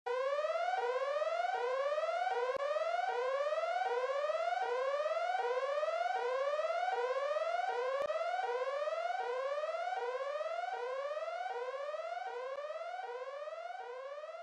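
Synthesizer intro of an R&B track: a tone that sweeps upward and then drops back to start again, repeating a little faster than once a second and fading slightly toward the end.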